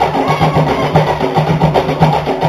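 Tahitian drum ensemble playing a fast, steady rhythm of quick repeated strokes with a strong low pulse.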